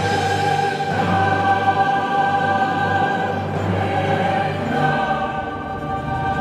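Mixed choir and string orchestra holding a sustained chord, with a low note held beneath.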